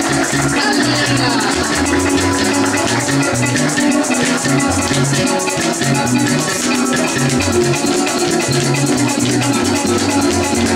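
Fast Colombian llanera (joropo) music: a plucked harp carrying a quick bass line and melody, with maracas shaken in a rapid, even rhythm.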